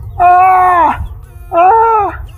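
A man crying out in pain in long wordless wails, two in quick succession, each held and then falling in pitch at its end. The cries come from a fresh bite: two puncture marks on his leg.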